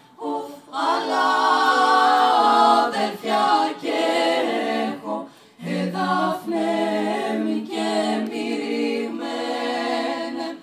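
Women's a cappella vocal group singing a song in several-part harmony with no instruments, in phrases with a short breath break about halfway through.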